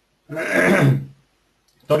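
A single throat-clearing, about a second long, starting a moment in. Talking resumes right at the end.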